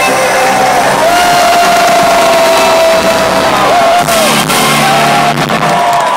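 Live rock band playing the close of a song over a festival PA, heard from within the audience, with the crowd cheering. A long held high note sounds about a second in and lasts some three seconds.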